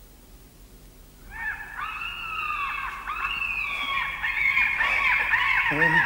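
Many overlapping shrill, wavering cries, like a flock of geese honking, start about a second in and build steadily louder.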